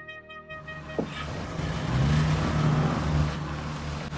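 A Ford Ranger pickup's engine running, getting louder about two seconds in.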